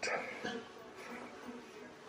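Faint shop room tone: a low, steady buzzing hum.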